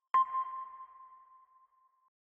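A single sonar-style electronic ping, the sound effect of an animated logo: a sharp strike that rings at one steady pitch and fades away over a second or two.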